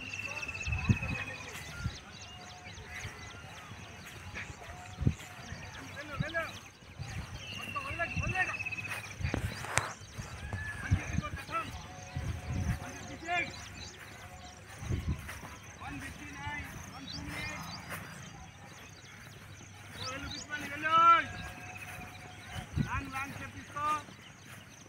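People's voices calling out across an open field, heard in short scattered bursts, the loudest about 21 seconds in, with scattered dull thumps. Two long, high, falling calls sound near the start and about eight seconds in.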